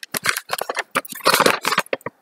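A large folded paper sewing-pattern sheet being opened out by hand, rustling and crackling in a quick, irregular run of crisp crinkles.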